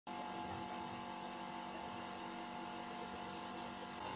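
A faint, steady hum with several held tones, unchanging throughout.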